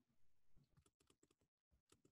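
Faint typing on a computer keyboard: a quick, irregular run of soft key clicks.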